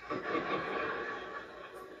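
Studio audience laughing after a joke's punchline, the laughter dying away over about two seconds.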